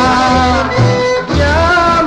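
Instrumental break of a Greek folk song: an ornamented melody line over plucked-string accompaniment with a bass that pulses in even beats.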